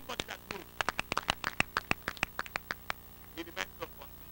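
A quick, irregular run of sharp clicks or knocks lasting about two seconds, over a low steady hum.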